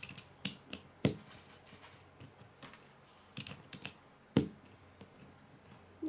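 LEGO bricks and plates clicking and snapping as they are pressed onto a small wheeled chassis: a string of irregular sharp clicks, the loudest about a second in and about four and a half seconds in.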